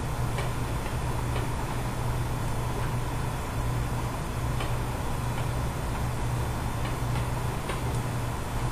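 Steady low electrical hum and hiss from the recording microphone, with faint irregular ticks from a pen stylus tapping on a writing tablet while words are written.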